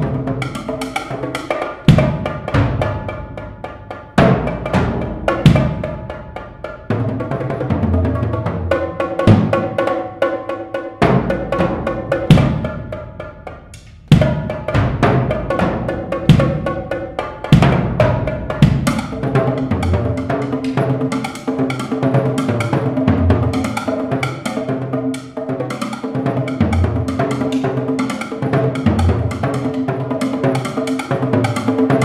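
Solo drum performance on a set of tuned skin and wooden-headed drums (tom-toms, congas, bongos) played with timpani-style mallets, with deep bass drum hits. Widely spaced heavy strokes that ring out give way, a little past halfway, to a dense, fast run of strokes.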